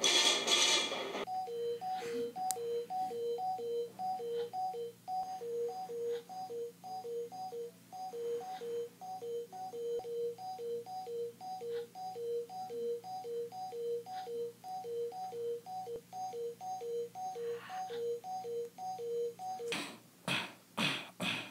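Electronic two-tone beeping: a lower and a higher note alternate in a steady loop, about two of each per second, after a louder burst of music-like sound cuts off about a second in.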